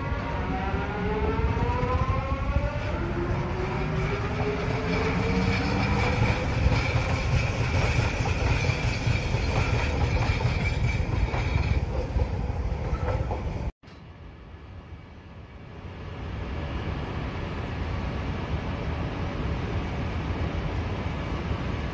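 Train passing close by, with a rumble and a motor whine that rises in pitch as it speeds up, then holds a steady high tone. About two-thirds of the way through the sound cuts off suddenly, and a quieter train sound builds up again.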